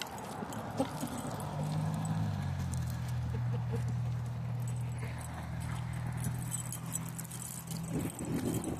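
Footsteps on a paved path and the light jingle of a dog's chain leash. A steady low hum, like a distant engine, sets in about a second and a half in and is the loudest sound from then on.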